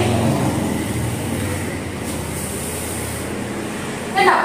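Steady background noise: a low hum under an even hiss, unchanging throughout.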